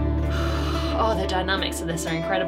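Band music playing: a held chord over a low bass note fades away, and a voice comes in about a second in as the song moves into a quieter section.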